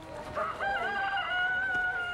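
A rooster crowing: one long call of about two seconds that steps up in pitch, holds, then falls away.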